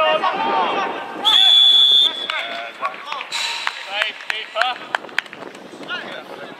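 Referee's whistle blown once, a shrill steady tone lasting under a second about a second in, stopping play. A fainter whistle follows around three seconds in, among players' shouts and a few sharp knocks.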